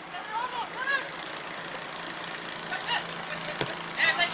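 Outdoor football-pitch ambience: players' shouted calls in the first second over a steady low hum, then a sharp thud of the ball being struck for a shot near the end.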